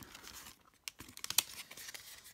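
Pokémon trading cards being handled by hand: a scatter of light clicks and rustles as the cards are squared up and set aside, with one sharper click about one and a half seconds in.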